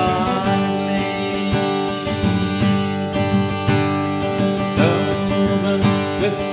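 Acoustic guitar strummed steadily, an instrumental passage between sung verses of a folk song.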